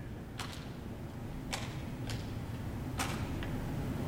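Balls smacking into bare hands as two people trade throws and catches: a series of short, sharp slaps, about six in four seconds, some close together in pairs.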